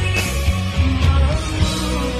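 A Malaysian slow rock song playing, a rock band with guitar over bass and drums.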